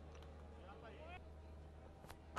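Near silence: faint ground ambience, with a low steady hum and distant voices.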